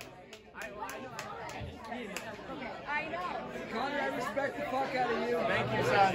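Several people talking at once in overlapping conversation, growing a little louder toward the end; no music is playing.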